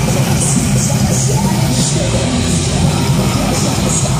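Live heavy metal band playing loud and dense: distorted electric guitars, bass and drums, with cymbals crashing several times. Heard from within the crowd.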